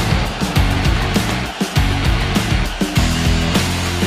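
Loud music with a heavy, fast drum beat and sustained bass: the broadcast's own music played over the animated break graphics.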